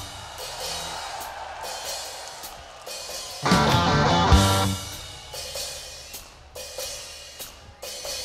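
Rock band music: drums and cymbals, with electric guitar and bass coming in loudly about three and a half seconds in and fading again a second or so later.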